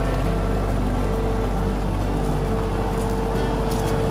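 Compact diesel tractor engine running steadily at low speed as the tractor drives slowly, with a constant hum and whine.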